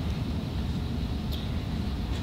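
Steady low rumble of room background noise in a large hall, with one faint click about a second and a half in.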